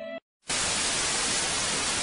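Loud, steady television static, a white-noise hiss, starting about half a second in after a held musical chord cuts off and a brief silence.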